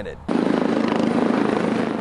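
Rescue helicopter (Eurocopter EC145) flying, with a dense, steady rotor and engine noise that cuts in abruptly about a quarter second in.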